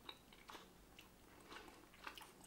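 Faint chewing of a gummy candy, with a few soft mouth clicks spread through.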